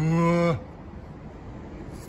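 A man's drawn-out "uuun" hum of thought, held on one steady pitch for about half a second at the start, then only low background ambience.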